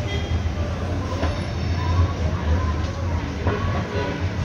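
A steady low rumble with faint voices in the background and two light clicks.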